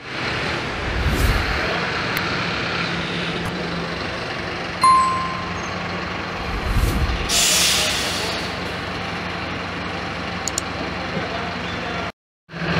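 Diesel engine of a Saritur bus running as it pulls into the bay, with a short high beep about five seconds in and a sharp hiss of air from the air brakes a couple of seconds later.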